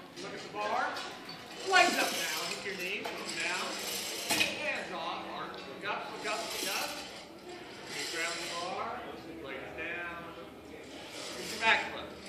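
Indistinct voices echoing in a large hall, with occasional metallic clinks and rattles. A louder call comes about two seconds in and another near the end.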